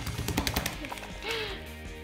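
A quick run of small wet taps and slaps, in the first half-second or so, as a hand pats and presses slimy polymer gel worms on a tabletop, over background music.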